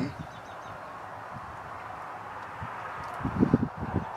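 Steady outdoor background hiss, with a short cluster of dull low thumps about three and a half seconds in.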